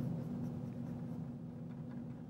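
Faint brushing of a paintbrush laying oil paint onto a canvas, over a steady low hum.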